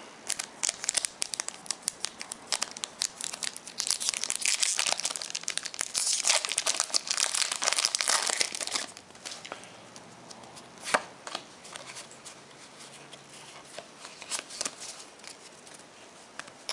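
A Pokémon booster pack's foil wrapper crinkling and tearing open by hand, loudest and most continuous from about four to nine seconds in, then quieter with a few scattered sharp clicks.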